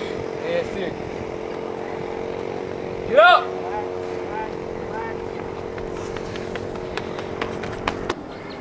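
A steady hum runs throughout. About three seconds in comes a loud, drawn-out shout whose pitch rises and falls, followed by a few short faint calls. Near the end, the quick footfalls of a sprinter in spikes on the rubber track pass close by.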